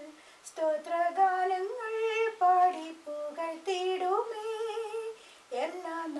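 A woman singing a Malayalam Christian praise song unaccompanied in a small room. Her melody moves between held notes in short phrases, with brief pauses for breath between them.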